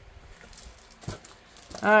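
Faint rustling and a few light taps of cardstock and paper inserts being handled and lifted out of a subscription box, followed near the end by a woman's spoken word.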